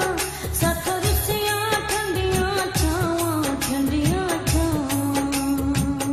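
A Punjabi sad song: a woman singing over a regular drum beat, holding one long note over the last two seconds.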